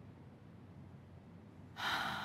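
Faint room tone, then near the end a woman's short, audible intake of breath.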